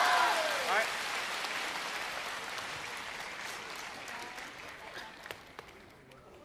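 Theatre audience applauding, the clapping dying away gradually over several seconds.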